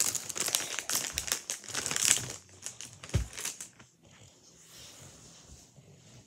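Rustling and crinkling right at the microphone, as from a phone being handled and rubbed close up. The noise is dense for the first couple of seconds, then turns fainter with scattered clicks and one low thump.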